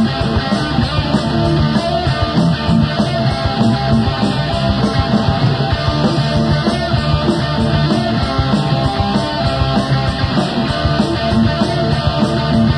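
A live rock band playing loud and without a break, guitars over busy drumming, in a concert recording taped off a radio broadcast.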